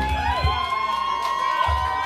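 A live band's song ending: the drums and final chord stop about half a second in, with one last low hit near the end, and the crowd cheers and whoops.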